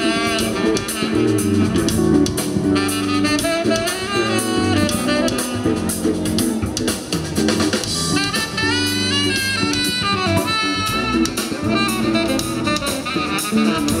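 Live jazz band playing: a saxophone carries the melodic lead over keyboards and a drum kit, breaking into fast rising and falling runs about eight seconds in.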